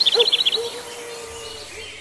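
A small songbird chirping: a fast run of short high notes, about ten a second, that fades within the first second. Fainter, scattered calls follow.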